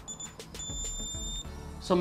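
Yongnuo speedlight test-fired through a transceiver on a Godox X2T trigger, giving a short high-pitched electronic tone, then a faint click or two, then a longer steady tone just under a second long. Soft background music underneath.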